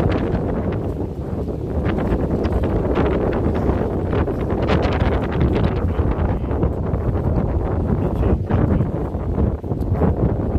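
Strong sea wind buffeting the microphone: a steady, loud rumble with gusty flutter.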